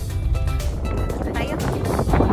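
Music playing over the steady low rumble of a car driving, heard from inside the cabin; a voice comes in near the end.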